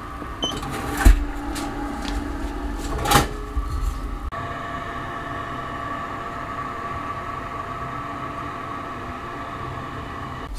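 Cinderella Comfort electric incinerating toilet starting its burn cycle after the flush button is pressed: a steady fan hum, not very loud, with a couple of knocks in the first few seconds. About four seconds in the hum changes pitch and settles into a steady running note.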